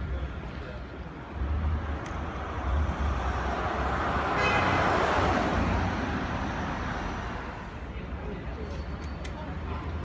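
Street traffic: a passing vehicle, its noise swelling to a peak about halfway through and then fading, over a steady low rumble.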